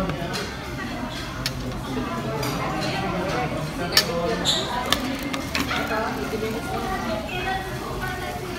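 Restaurant chatter in the background, with a few sharp clinks of dishes and cutlery, the loudest about four seconds in.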